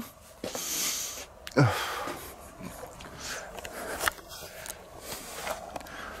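A man breathing close to the microphone: a breathy exhale about half a second in, then a short falling sigh, with handling rustle and a click as the handheld camera is turned around.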